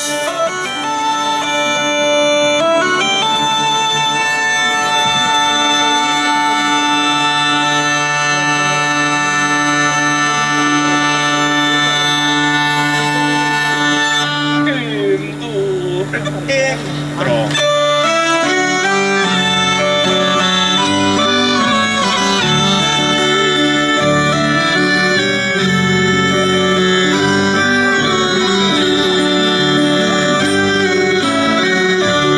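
Hurdy-gurdy playing an Occitan dance tune over its steady drone strings. Just past halfway the drone drops out for a short passage of sliding pitches. Then the tune goes on with accordion and a moving bass line filling out the lower range.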